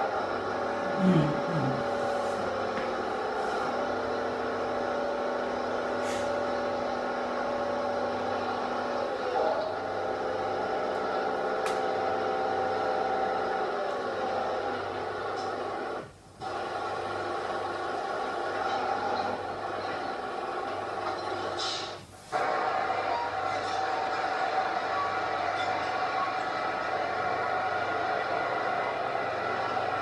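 Diesel engines of a tipper truck and a bulldozer droning steadily, the pitch shifting a little as they work. The sound cuts out briefly twice, about halfway through and again a few seconds later.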